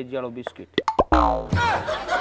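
Cartoon-style comedy sound effects: two quick boing-like pitch sweeps about a second in, then a loud falling swoop, then a short music cue starting near the end.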